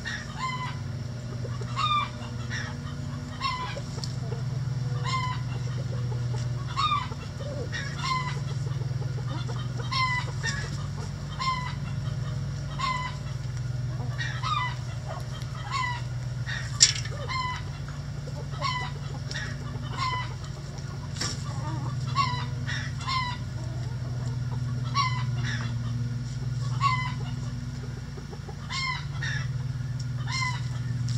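Chickens clucking: short, pitched clucks repeating about every second and a half, over a steady low hum, with one sharp click a little past halfway.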